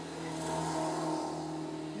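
A passing car, its engine and road noise swelling about half a second in and slowly fading.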